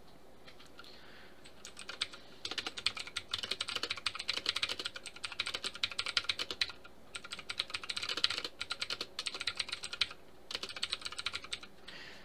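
Typing on a computer keyboard: quick runs of keystrokes starting about two seconds in, with brief pauses around seven and ten seconds.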